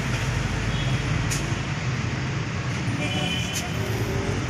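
Small gasoline engine of a one-bagger concrete mixer running steadily with its drum turning. Two short sharp sounds about a second in and near the end.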